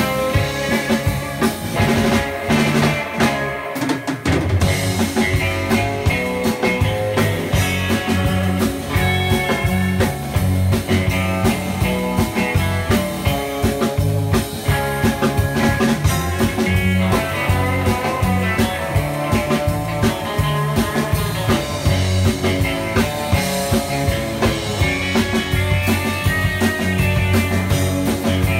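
Live rock band playing a surf-style instrumental: two electric guitars, bass guitar and drum kit, with a steady driving beat.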